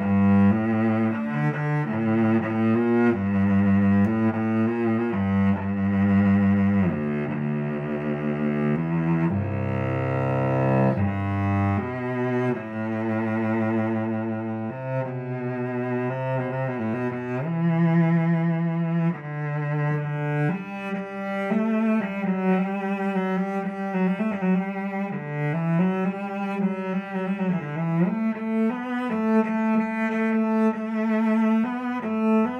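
Solo cello, a 2016 William Scott instrument, played with the bow. Long low notes with vibrato give way in the second half to quicker, higher phrases.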